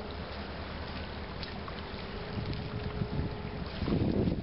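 Wind rumbling on the microphone, with a faint steady hum underneath that stops shortly before the end, where the rumble grows louder.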